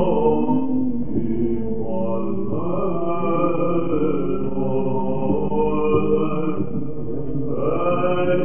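Male Byzantine cantors chanting a slow, melismatic Orthodox hymn in the first mode, with a low held drone (ison) under the moving melody. It is an old recording with a dull top end.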